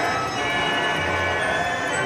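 Steady, busy fairground music from a miniature fairground display: many sustained organ-like tones with bell-like chimes, over a low hum that swells and fades about once a second.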